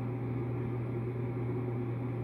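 Steady low hum under a faint, even hiss of room noise, unchanging throughout.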